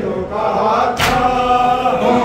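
Men's voices chanting a Muharram noha (Shia mourning lament) in Urdu, with a lead reciter and a group joining in. Near the middle comes a single slap of matam, rhythmic chest-beating that keeps the lament's beat.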